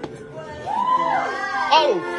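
A vocal sample of a high, child-like voice with strongly sliding, arching pitch, starting about half a second in, over faint background music.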